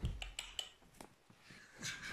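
A soft thump and a few light clicks and rustles as a cockatiel is set down by hand onto a cloth on the floor.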